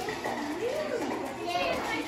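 Young children's voices, babbling and calling out at play, with high rising-and-falling vocal sounds.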